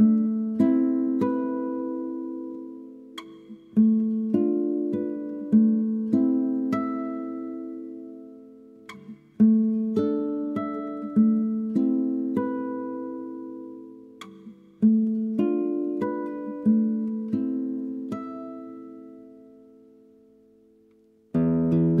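Solo acoustic guitar playing slow plucked arpeggiated phrases, each note left to ring and die away. The last phrase fades almost to silence, then fast strummed chords come in just before the end.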